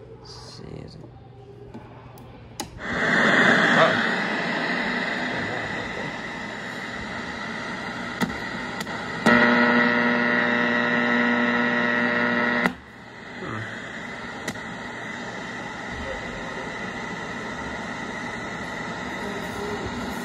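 Small radio's speaker giving static hiss over a steady hum, starting up about three seconds in. In the middle a steady buzzing tone sounds for about three seconds and cuts off suddenly, leaving quieter static.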